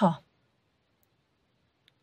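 A voice trails off in the first moment, then near silence with a faint click about a second in and another just before speech resumes.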